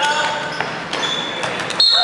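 Players shouting on a dodgeball court in an echoing sports hall, with dodgeballs knocking off the floor and players now and then. A louder burst of shouting breaks out near the end as the deciding out is made.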